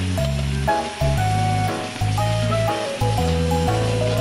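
Background music with a steady bass line, over the hiss of broth sizzling and seething around a red-hot stone dropped into a wooden tub of fish nabe, bringing it to a rolling boil.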